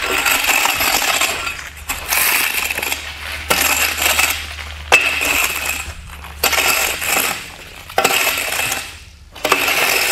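Damp joint sand being raked back and forth over concrete pavers: a gritty scrape of sand and tool teeth dragged across the paver tops, about seven strokes, one every second and a half.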